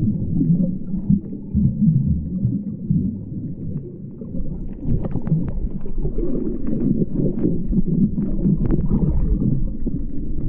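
Low churning rumble of moving water picked up by a camera held underwater, with scattered short crackles and clicks starting about halfway through.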